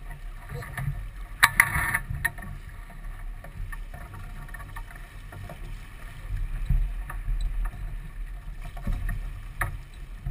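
Wind buffeting the microphone and water rushing along the hull of a sailboat under sail. A short run of sharp clicks comes about a second and a half in, and one more near the end.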